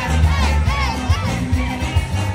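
Loud dance music with a steady bass beat, with a quick run of high rising-and-falling shouts from the crowd over it in the first second or so.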